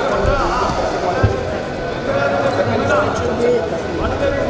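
Wrestling shoes squeaking and feet thudding on the mat as two freestyle wrestlers grapple and shuffle in a tie-up, with a couple of heavier thuds in the first second and a half.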